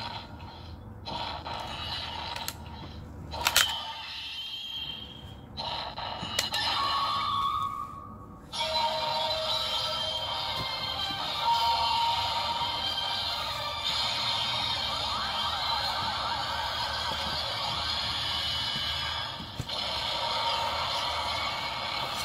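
Ultraman Decker DX Ultra D Flasher toy playing a card's electronic sound effects through its small speaker: a few clicks and short electronic sounds, then, about eight seconds in, a continuous stretch of music. This card gives the same sound effect as another card already in the set.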